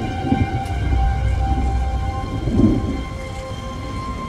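Heavy rain with a low rumble of thunder that fades about halfway through.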